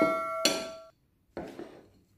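A bell chime ringing out and fading over about a second, with a short knock about half a second in and a couple of faint taps after.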